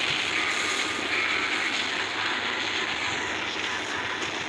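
Steady rushing, rumbling noise from an animated battle scene's sound effects, with no sharp impacts.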